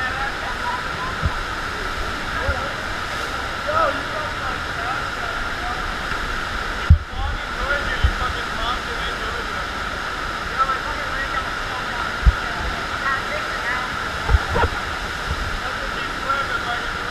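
Steady, continuous rush of water pumped up the sheet-wave slope of a FlowRider surf machine. A few short low thumps come through it at irregular moments.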